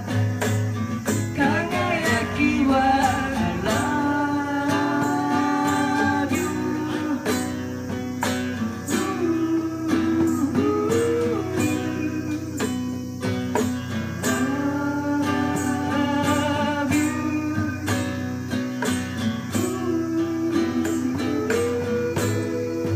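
A live song: acoustic guitar played in a steady rhythm, with singing and light percussion keeping the beat.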